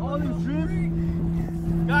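Steady low hum of an idling engine at one unchanging pitch, with faint voices in the first half second.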